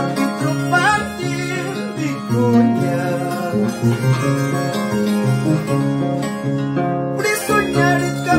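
Peruvian Andean harp plucked in a slow huayno, bass notes and chords under a higher melody line that glides between notes, carried by a violin.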